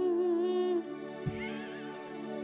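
Live dangdut band playing a slow song's intro: held keyboard chords under a wavering melody line, with a single drum hit a little past halfway and a high warbling melody line after it.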